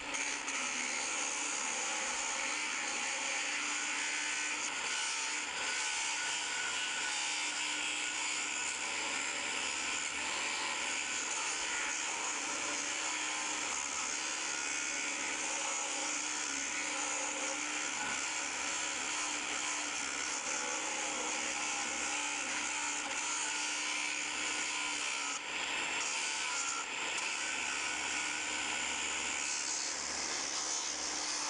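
Makita 7-inch angle grinder with a 36-grit grinding disc, running steadily against the cut edge of steel tubing to grind it clean. It dips briefly twice near the end.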